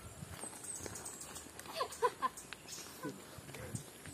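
Footsteps on a stony dirt path: scattered, uneven steps, with faint voices in the distance.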